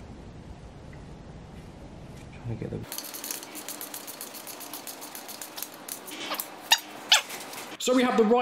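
Rapid, even clicking of a ratchet socket wrench turning the camshaft on a V8 cylinder head, starting about three seconds in. Two louder sharp sounds come near the end.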